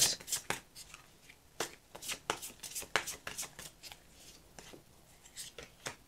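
Light Seer's Tarot deck being shuffled by hand: a string of quick, irregular card flicks and slaps, thinning out and growing fainter toward the end as a card is drawn from the deck.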